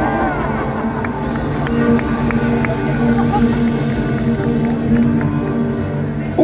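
Live rumba flamenca band playing an instrumental passage: rhythmic strummed acoustic guitars, about three strokes a second, over sustained notes. A sung line ends in the first half second, with crowd noise underneath.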